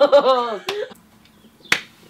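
Young men's laughter trailing off, then a single sharp snap near the end.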